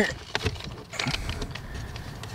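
Faint rubbing and a few light clicks as hands work a red anodized aluminium pedal cover with a rubber back over a car's accelerator pedal.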